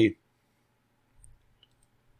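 A spoken word ends at the start, then quiet room tone with a soft low bump and two faint clicks of a computer mouse about a second and a half in.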